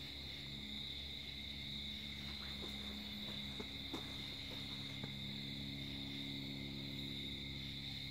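Crickets chirping in a steady, continuous high-pitched chorus, with a faint low steady hum underneath and a few faint clicks.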